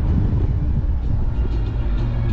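Car driving along a road: steady low rumble of road and wind noise. Music starts to come in near the end.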